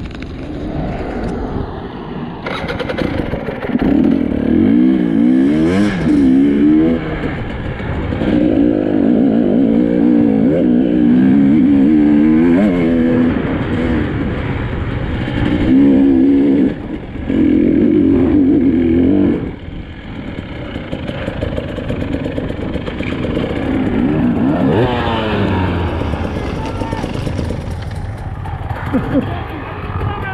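Enduro dirt bike engine revving under load off-road, its pitch rising and falling again and again through the throttle. It runs loud for most of the middle, then drops to a quieter, lower run about twenty seconds in.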